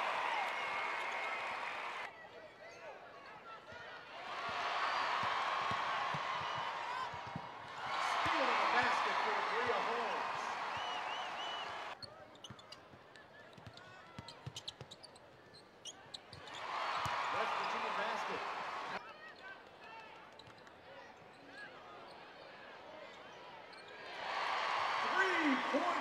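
Basketball arena sound in a series of cut clips: crowd noise that comes and goes in loud stretches, broken by abrupt cuts. In the quieter stretches a basketball bounces on the hardwood court.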